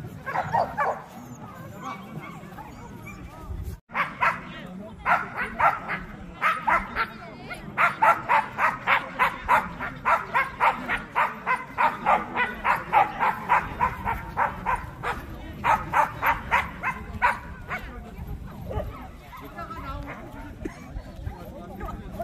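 Jindo dog barking over and over in quick, even runs of about two to three barks a second. It starts about four seconds in and stops a few seconds before the end, with people talking underneath.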